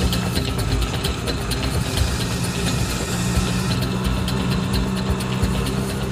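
Auto rickshaw engine running steadily, heard from inside the open cab, with a continuous rapid ticking rattle over a low hum.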